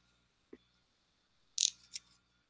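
A quiet pause in an online call: faint room tone, with a tiny short blip about half a second in and two brief hissy noises near the end.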